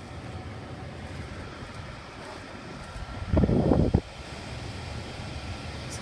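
Steady low background rumble, with a loud burst of rumbling noise on the phone's microphone lasting about half a second, a little past the middle.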